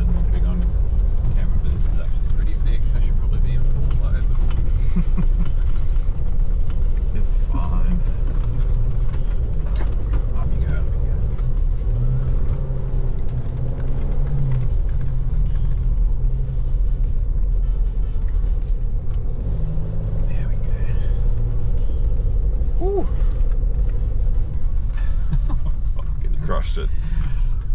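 Nissan Navara NP300 ute heard from inside the cabin while driving slowly over a rough dirt track: a steady low rumble of engine and tyres on the rutted ground.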